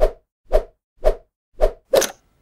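End-screen motion-graphics sound effects: a run of short whoosh-thump hits, about two a second, timed to animated on-screen text.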